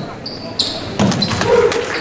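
Basketball game sounds on a hardwood gym floor: short high sneaker squeaks in the first half second, a ball thud about a second in, and crowd voices.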